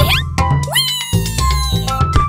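Upbeat background music with bass and percussion, over which a cartoon kitten voice calls out wordlessly, meow-like: a short rising sound at the start, then a longer call that rises quickly and slowly falls away over about a second.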